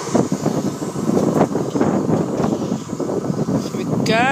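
Wind buffeting the microphone in ragged gusts, over the low rumble of a Class 153 diesel railcar that has just gone through the crossing.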